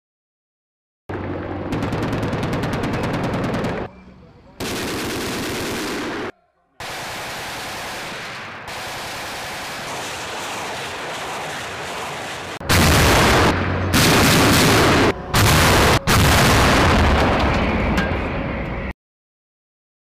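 Military live-fire sounds in a run of short clips with abrupt cuts: rapid automatic weapon fire about two seconds in, steady noisy stretches in the middle, and the loudest firing over the last six seconds, ending abruptly about a second before the end.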